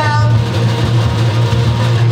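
Live rock band playing between sung lines: a steady low note holds underneath while the end of a sung phrase fades out at the very start.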